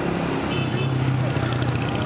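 Street ambience: steady traffic noise with a low engine drone under it, and faint voices.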